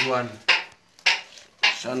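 A man's short calls, with sharp metallic knocks about half a second apart between them.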